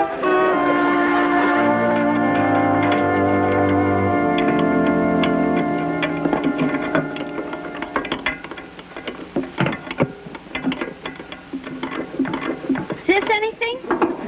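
A scene-change music cue of sustained held chords for the first six seconds or so, then a quieter run of scattered knocks and clicks.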